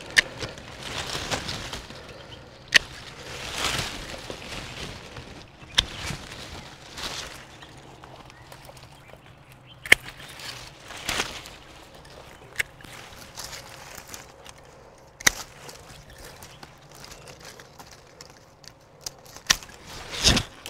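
Hand pruning shears snipping grapevine canes: about six sharp cuts a few seconds apart, with leaves and branches rustling as the vine is handled between cuts.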